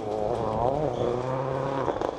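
Ford Focus WRC rally car's turbocharged four-cylinder engine heard from a distance, its revs rising and falling a little as it drives through a gravel bend.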